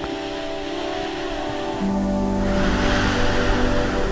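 Background music of held, sustained chords; a lower note comes in just before two seconds in and the music gets slightly fuller.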